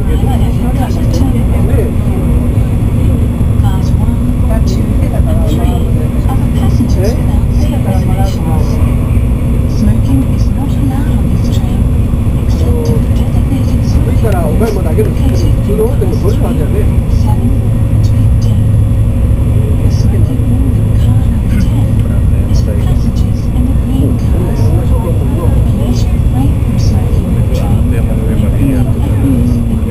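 Cabin noise of an N700 series Shinkansen running at speed: a loud, steady low rumble with a constant hum, and indistinct passenger voices in the background.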